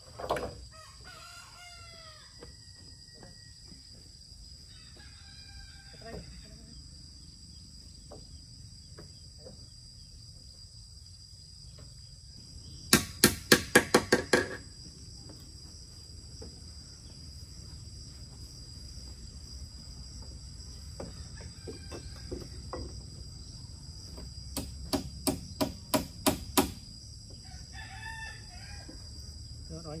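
A hammer driving nails into a wooden roof frame: two quick runs of about eight sharp blows each, the second some ten seconds after the first. A rooster crows near the start and again near the end, over a steady high drone of insects.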